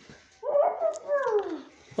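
A person's voice making two high, whiny cries with falling pitch, like a dog whimpering.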